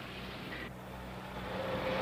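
Faint outdoor hiss, then a car engine drawing nearer, growing louder near the end.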